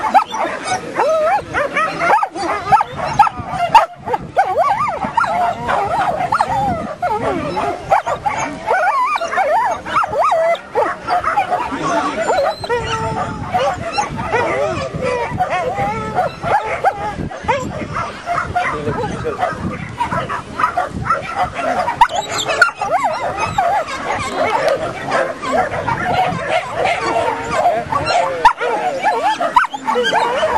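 Dogs barking and yipping over and over without a break, with people's voices mixed in.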